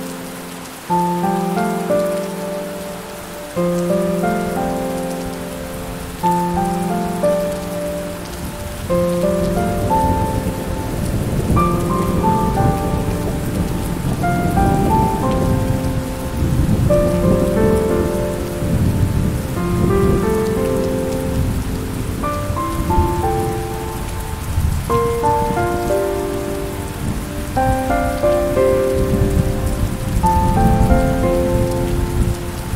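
Steady rain hiss with slow, gentle piano notes and chords laid over it. From about nine seconds in, a low roll of thunder rumbles beneath, swelling and easing through the rest.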